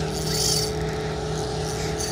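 An engine running steadily, a low hum with an unchanging pitch.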